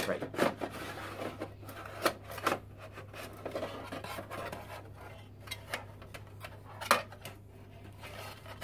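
Aluminium drive carriers of a Mac Pro 5,1 tower being slid out and handled: metal rubbing and scraping, with scattered clicks and knocks and a sharper knock near the end, over a steady low hum.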